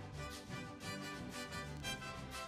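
Full orchestra with a brass section of trombones and trumpets over strings and tuba, playing a lively folk tune with a quick, steady beat of about four strokes a second.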